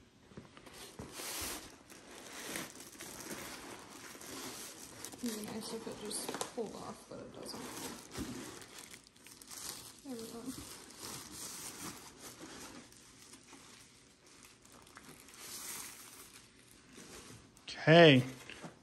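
Soft crinkling and rustling of a thin plastic wrapping sheet as it is pulled out of a foam-packed box, with light scuffs of the foam packing.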